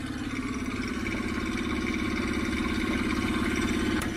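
An engine idling steadily, a low pulsing hum that grows slightly louder over the few seconds.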